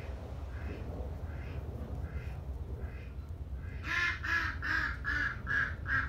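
A duck quacking: faint quacks about once a second at first, then a rapid run of about six louder quacks near the end. A steady low rumble lies underneath.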